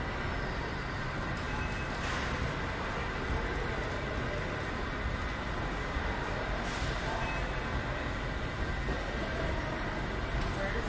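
Steady low rumble and hiss of the ambience in an indoor shopping-mall atrium, with a brief faint rustle about two seconds in and again near seven seconds.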